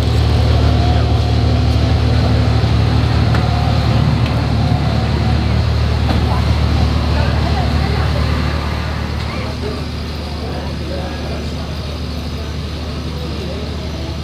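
An engine running steadily at idle, a deep even hum, with street noise around it; it eases slightly about two-thirds of the way through.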